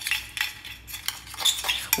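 A metal fork stirring a wet mixture in a small glass bowl, clinking and scraping against the glass in irregular quick clicks.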